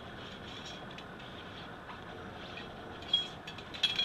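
Steady low room hiss, then near the end a few light metallic clicks and taps as a steel cleaning rod is handled in a shotgun barrel.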